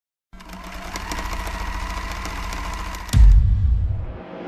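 Sound-effect ident for a record label's video channel: a rapid mechanical clatter with a faint steady whine, cut about three seconds in by a deep bass boom that then fades.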